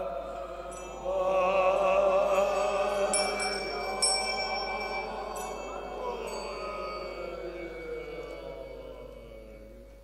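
Buddhist monks chanting a prayer together, long wavering held notes that die away over the last few seconds. A small ritual bell is struck several times and rings on over the chant.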